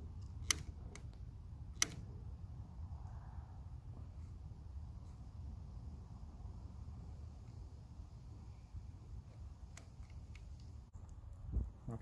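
Fatwood fire starters catching and burning in the firebox of a wood-pellet pizza oven: a few sharp, isolated crackles over a low, steady rumble.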